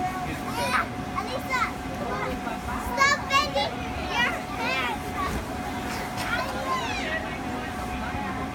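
Young children shouting and squealing as they play on an inflatable bounce house. Under the voices runs the steady hum of the bounce house's electric air blower.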